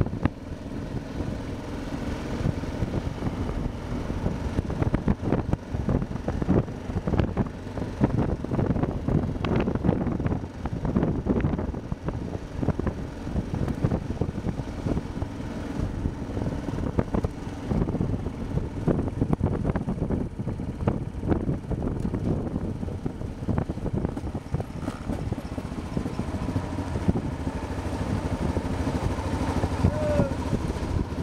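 Motorcycle engine running at a steady riding pace, heard from on the bike, with uneven buffeting and road noise.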